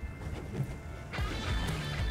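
Background music, quiet at first and fuller from about a second in, over a low rumble.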